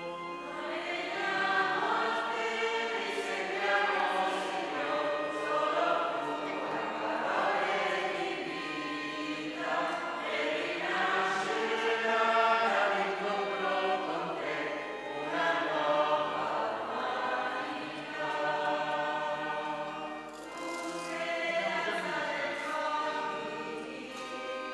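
A church choir and congregation singing a hymn in sustained, slow phrases, accompanied by an organ.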